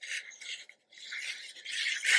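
Applicator tip of a liquid-glue squeeze bottle scraping along the edge of a cardstock flap as glue is run on: a soft scratchy rubbing in a couple of short strokes, then a longer stroke in the second half.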